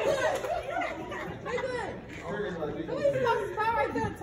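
Indistinct chatter: several people talking at once at a distance in a large hall.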